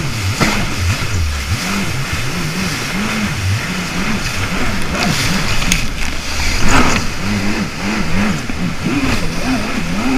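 Jet ski engine running, its pitch rising and falling again and again as the craft rides over rough water, mixed with the rush and splash of whitewater and spray. The loudest splash comes about two-thirds of the way in.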